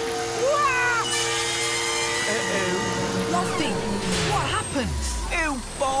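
Cartoon seagull squawking repeatedly over sustained background music. A rushing hiss comes in about a second in, and a low thud or rumble follows near the end.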